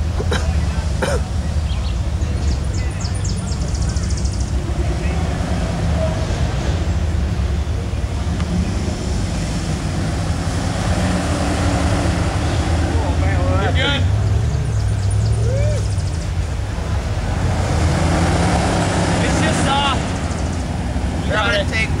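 Jeep Wrangler Rubicon's engine running at low crawling speed, a steady low rumble that swells twice as it works over the dirt mound. Voices talk in the background.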